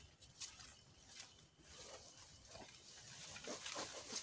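Faint rustling of leaves and twigs with soft footsteps as someone squeezes through dense undergrowth, in a few short brushes.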